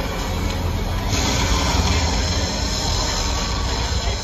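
Loud rumbling, grinding noise played over a theatre's speakers, with a rushing hiss setting in about a second in: the soundtrack of an animated Titanic sinking.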